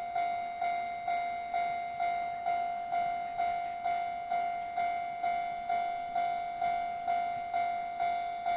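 Japanese railway level-crossing alarm ringing: a single high electronic bell tone struck about twice a second, each strike fading before the next. It is the warning that a train is approaching the crossing.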